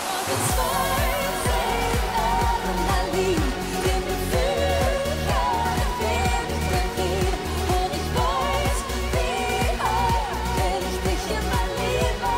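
Live pop song: a woman singing into a handheld microphone over a steady, driving dance beat. The full beat comes back in right at the start after a brief break.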